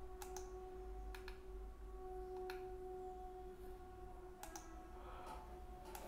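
Faint, scattered clicks of a computer keyboard, several of them in quick pairs, over a faint steady electrical hum.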